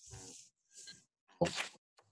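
Short breathy vocal noises from a person on a video call. There is a soft one at the start, then a louder, sharper one about a second and a half in.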